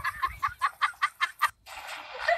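Quick rhythmic laughter, short pitched pulses about five a second, cut off suddenly about one and a half seconds in.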